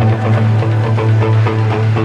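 Rock music: electric guitar played along with the band's recording, holding a low note under a steady drum beat.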